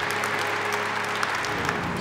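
Audience applause as an even, steady patter, with background music holding sustained notes underneath.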